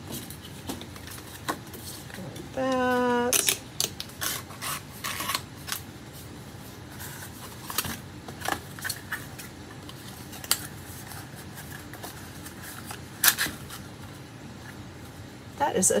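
Paperboard gift boxes being folded and creased by hand on a stainless steel table: scattered crinkles, clicks and light taps of card, with a short hummed note about three seconds in.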